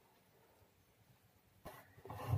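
Near silence: room tone, with one faint brief sound near the end.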